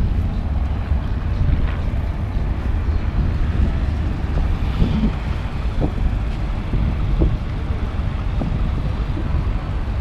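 Wind buffeting the camera microphone: a steady, loud low rumble.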